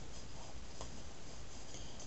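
Faint rubbing and handling noise over a steady low hiss, with a single light tick near the middle.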